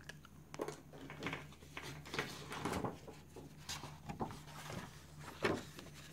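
A sheet of plain paper rustling and sliding as it is handled and laid over a colouring-book page as a hand rest, in a series of soft, scattered brushes. Plain paper is used here instead of tracing paper because it makes a lot less noise.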